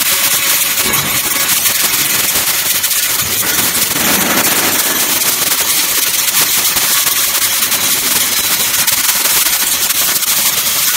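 Metabo KFM 16-15 F bevelling machine milling a bevel along the edge of a steel plate. Its motor runs steadily under load while the cutter head chips the steel with a loud, dense, rapid crackle.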